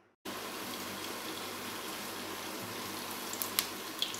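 Hot cooking oil sizzling steadily in a frying pan, with a few faint ticks near the end.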